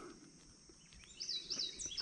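A songbird singing a quick run of repeated high chirping notes, starting about a second in, over a faint outdoor background.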